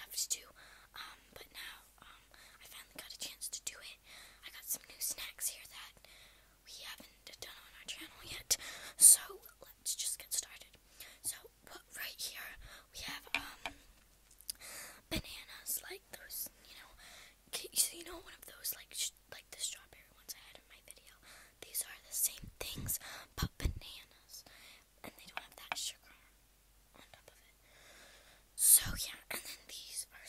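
A girl whispering, in short phrases with pauses between them, with a few low thumps around the middle and near the end.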